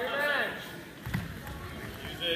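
A short shout, then about a second in a single dull thud on the wrestling mat from the grappling wrestlers.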